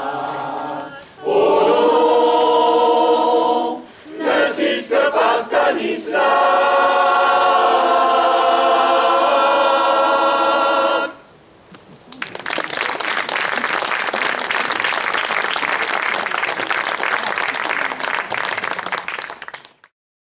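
Mixed amateur choir singing the song's closing phrases in sustained chords, breaking off at about 11 seconds. About a second later an audience applauds steadily for about eight seconds, then the sound cuts off abruptly.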